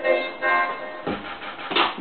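Electronic music track played through a pair of floor-standing hi-fi loudspeakers, coming in short repeated chord stabs.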